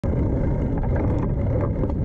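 Steady low rumble of wind and rolling noise picked up by a camera mounted on a moving bicycle, with a few faint rattles.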